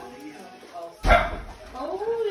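A single dog bark about a second in, sudden and loud, over faint voices.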